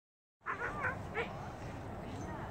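A dog giving three or four quick, high yipping barks in the first second and a half, over a steady low background rumble.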